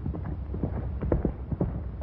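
Horse hooves galloping: a quick, irregular run of hoofbeats over a steady low rumble.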